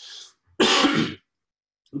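A man clears his throat once, a loud rasp lasting about half a second.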